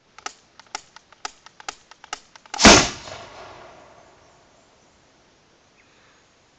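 PVC combustion spud gun being fired: a run of sharp clicks, about two a second, typical of its spark igniter being pressed, then a single loud bang as it goes off, with a tail that dies away over about two seconds.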